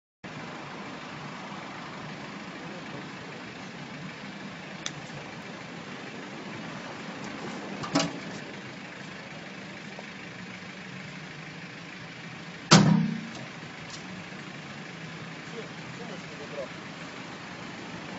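Steady hum of passing street traffic, broken by two sharp bangs about eight seconds in and a louder one near thirteen seconds: blows struck against a car's body.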